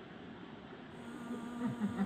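A flying insect buzzing, a steady hum that sets in about halfway through, over a steady rush of running water.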